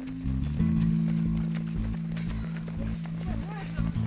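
Footsteps of many runners on an asphalt road, with music that holds steady bass notes and changes note about half a second in. Voices can be heard in the background.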